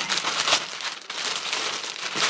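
Thin red plastic delivery bag crinkling and rustling as hands open and rummage in it, loudest about half a second in.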